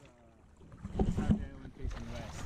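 Kayak paddle strokes in the water, with two sharp splashes about a second in, and wind rumbling on the microphone.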